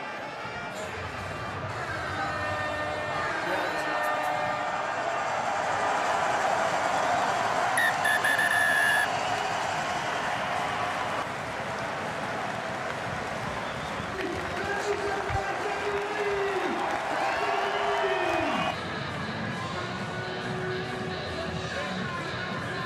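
Stadium crowd cheering and applauding, swelling to its loudest about eight seconds in, when a referee's whistle blows, likely the final whistle. Later two long low held notes each drop away at the end over the continuing crowd.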